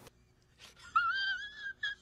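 A high-pitched, wavering whimpering cry, about a second long, starting about halfway in, with a short squeak at the same pitch just after it.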